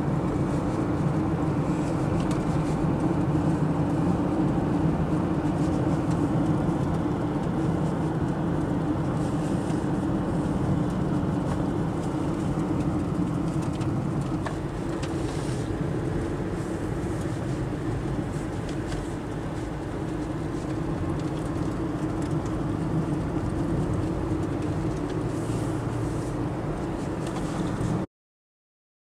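Steady engine and road noise of a car driving, heard from inside the cabin.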